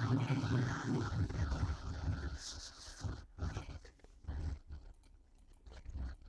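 A man drinking from a plastic bottle with continuous gulping mouth sounds, which stop about two seconds in. A few short, quieter sounds follow.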